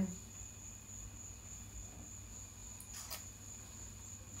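Quiet room tone: a faint steady high-pitched tone over a low hum, with one soft click about three seconds in.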